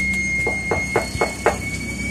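Knuckles knocking on a glass-paneled front door: five quick knocks about a quarter second apart, the first one lighter.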